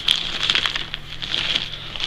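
Clear plastic garment bag crinkling and rustling in quick, irregular crackles as it is handled.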